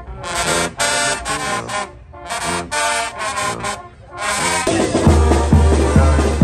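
Mexican banda brass band playing, with short brass phrases separated by brief gaps. About four and a half seconds in, the sound switches abruptly to louder, fuller music with a strong low beat about twice a second.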